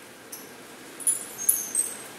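Small metal dog tags on a collar clinking a few times as the dog moves, each clink short with a high, ringing tone.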